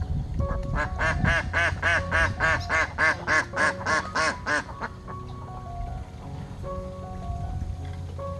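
Domestic ducks quacking: a quick run of about a dozen loud quacks, some three a second, in the first half, then quieter, over background music with held notes.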